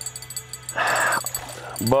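A hooked freshwater drum splashing once at the water's surface as it is reeled in, a short rushing splash about a second in that lasts half a second. A man's voice starts at the very end.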